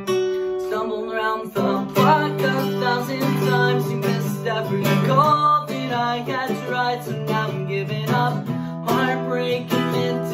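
Acoustic guitar strummed in chords, with a fresh strum about a second and a half in, and a man singing over it from about two seconds in.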